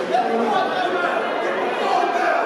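Overlapping voices of boxing spectators, chattering and calling out as a crowd.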